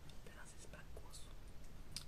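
A woman's faint whispered speech under her breath, a few soft s-sounds and broken syllables.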